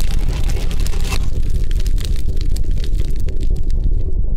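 Logo-sting sound effect of a fiery explosion: a deep, sustained rumble full of crackles, with a sharper hit about a second in. The crackles thin out toward the end.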